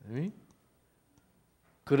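A man's short spoken sound, then a pause with a couple of faint clicks, then his speech starts again near the end.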